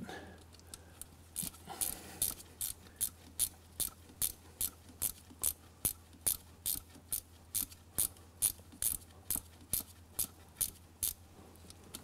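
Ratcheting box-end wrench clicking in a steady rhythm, about two to three clicks a second, as it backs a glow-plug hole reamer out of a diesel cylinder head.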